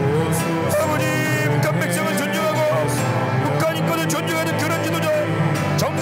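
A congregation crying out in loud Korean-style group prayer, many voices praying aloud at once and overlapping, over sustained background music.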